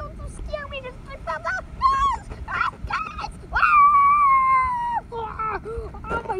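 High, cartoonish voices yelping and wailing in short cries, then one long held scream from about three and a half seconds in that slides slowly downward for over a second. A low wind rumble on the microphone runs underneath.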